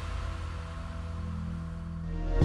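Background music with steady held tones over a low bass.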